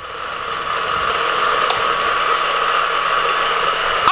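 Motorised booster of a Hot Wheels Criss Cross Crash track, switched on and spinning, giving a steady electric whir that grows louder over the first second and then holds.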